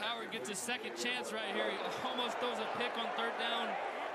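College football TV broadcast playing at low volume: an announcer's voice over stadium crowd noise, with several short, sharp taps or clicks scattered through it.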